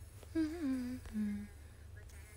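A woman hums with closed lips in two short parts: a wavering hum about half a second in, then a shorter, lower, steady hum.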